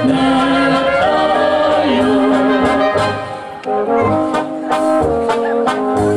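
Czech brass band (dechovka) playing live, with clarinets, trumpets and tubas. Voices sing a phrase with the band for about the first three seconds. After a brief dip the band plays on alone over a steady bass beat.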